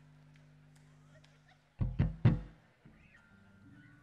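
Live stage PA with a faint steady low hum, broken about two seconds in by three loud plucked bass guitar notes in quick succession, played between songs.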